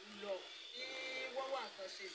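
A faint person's voice, low and murmured, with no clear words.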